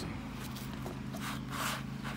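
Soft rustling of hands handling a zippered, foam-lined knife case, strongest in the second half, with a small click just before, over a steady low background hum.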